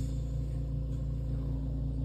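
Steady low machine hum and rumble with a fast, even pulsing, as of a motor running continuously.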